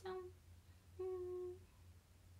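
A young woman's voice finishing a spoken word, then a short, steady, closed-mouth hum held for about half a second, about a second in.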